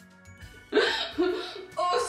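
A woman laughing in short bursts, starting about three-quarters of a second in after a near-quiet moment.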